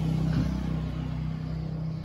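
A steady low engine hum, easing off a little over the two seconds.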